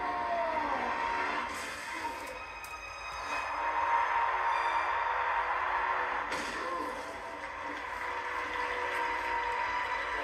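Dramatic soundtrack audio: music under a steady rushing noise, with brief surges about a second and a half in and again past six seconds, growing loudest around four seconds in.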